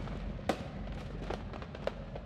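Fireworks bursting: three sharp bangs, the loudest about half a second in, over a steady low rumble.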